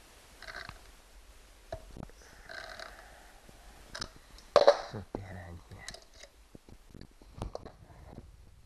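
Light clicks of a hand tool and small metal parts being worked on a leaf blower's engine block, with brief low murmured vocal sounds near the start and in the middle. A single loud short burst of noise comes about halfway through and is the loudest sound.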